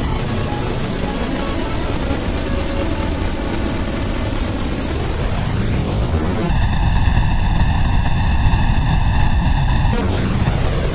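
Studiologic Sledge synthesizer (Waldorf engine) producing a loud, harsh, noisy sustained sound while its knobs are turned, with fast sweeping hiss up high. About six and a half seconds in it abruptly changes to a heavier, hollow-sounding tone with a strong low end.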